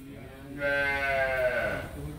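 A cow mooing once: a single call about a second and a half long, starting about half a second in and falling in pitch as it goes.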